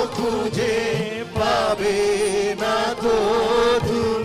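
Live band with a group of male and female singers singing a Bengali song together in chorus, holding long notes with a wavering pitch over the band's accompaniment.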